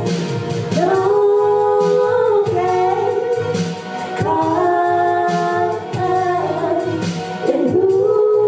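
Two women singing live into microphones over backing music, holding long notes that break off and start again every second or two.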